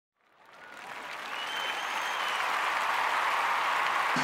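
Audience applauding, fading in from silence and growing steadily louder.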